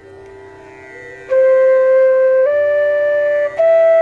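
Bansuri (bamboo transverse flute) playing the opening notes of the sargam, Sa, Re and Ga, each held about a second and each a step higher, starting a little over a second in. A steady drone tone sounds underneath throughout.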